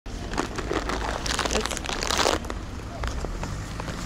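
Crinkling, rustling noise for about two seconds that stops abruptly, over a steady low rumble.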